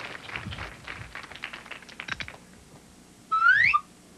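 A comic sound effect for the picture flipping over: a short rising whistle-like tone, the loudest thing here, about three quarters of the way through and ending in a brief blip. Before it, a run of quick sharp clicks and taps for about two seconds.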